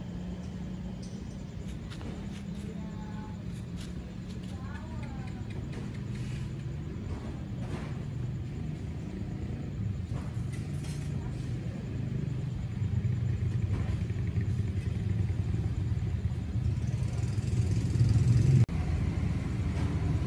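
A steady low engine rumble, like a vehicle idling close by, that grows louder in the second half and drops off suddenly near the end. Faint voices are heard in the background.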